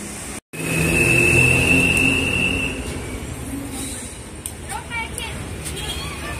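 An abrupt cut, then outdoor street noise: a low rumble with voices, and a steady high whistling tone for about two seconds.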